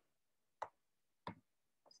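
Two faint computer keyboard keystroke clicks about two-thirds of a second apart, with a fainter tick near the end, in otherwise near silence.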